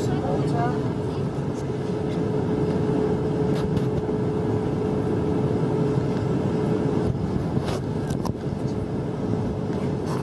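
Steady drone of an airliner passenger cabin, the dense rushing noise of engines and airflow, with a steady hum that stops about seven seconds in. Faint voices of passengers sit under it.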